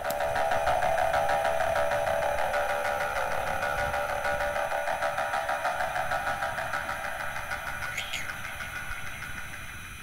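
The miniature W16 engine animation of a Jacob & Co Bugatti Chiron Tourbillon watch running: a fast, even mechanical whirr with a rapid ripple, fading gradually toward the end.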